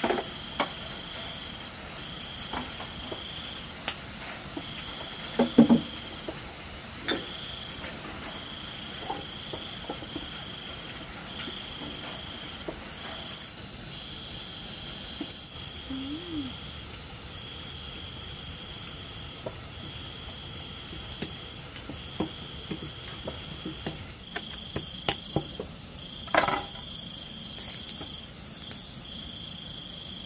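Night insects such as crickets singing: one steady high trill that stops about halfway through, another singing in repeated bursts of about a second, and a fast pulsing buzz above them. A few sharp knocks break in, the loudest about five seconds in and near the end.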